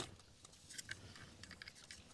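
Faint, scattered small clicks and taps of plastic from a gauge and its six-pin wiring connector being handled and fitted into a dash gauge pod.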